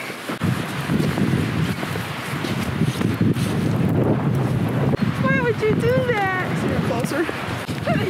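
Wind buffeting the camera microphone with a steady low rumble, and a voice calling out in high, sliding tones about five seconds in.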